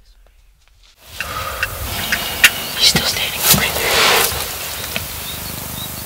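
Hushed whispering with a few sharp clicks, over a steady hiss that starts about a second in after near silence.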